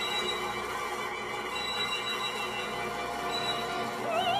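Contemporary orchestral opera music with no voice: a soft, dense texture of many held tones, with high sustained notes sounding above it.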